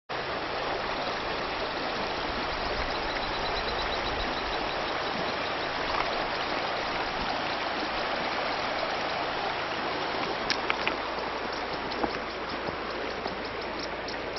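Shallow river running fast over stones in riffles, a steady rushing of water. A few short sharp clicks sound over it in the second half.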